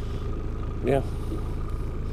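A boat motor running at idle: a steady low rumble with a faint steady whine above it.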